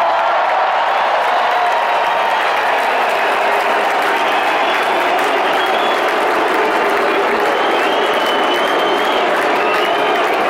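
Large arena crowd applauding and cheering, a dense steady wash of clapping with scattered shouts rising above it.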